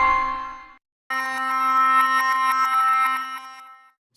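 Omnisphere synth soundsources auditioned one after another, each playing a held note automatically as it loads in Preview Load mode. A sustained tone made of many steady pitches fades out in under a second. After a brief gap, the next soundsource starts a new sustained tone that fades out near the end.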